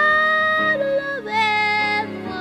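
Soul-folk song with a high female voice that slides up into a long held wordless note over a backing band, moving to new notes about halfway through.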